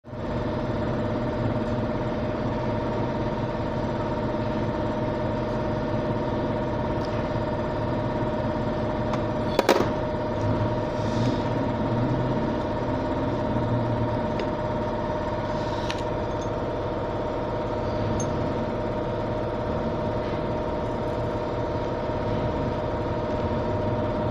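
A steady engine-like hum runs throughout with a few held tones. A single sharp knock comes about ten seconds in.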